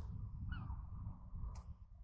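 Wind buffeting the microphone with a low, uneven rumble. A short falling bird call sounds about half a second in, and a sharp click comes near the end.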